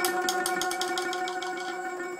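Traditional Vietnamese chèo instrumental accompaniment closing the song: held final notes with a rapid run of short repeated strokes over them, fading away.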